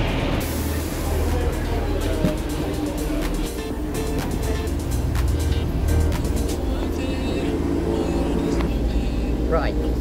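Underfloor diesel engine of a Class 144 Pacer railbus idling with a steady low rumble, with short clicks and knocks as someone steps aboard between about two and seven seconds in.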